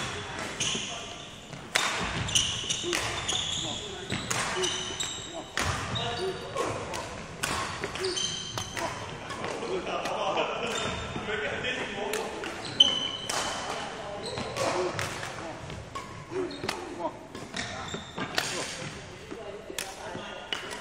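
Badminton hall ambience with echo: indistinct voices, frequent sharp hits and short high squeaks scattered throughout, from play and shoes on the wooden court.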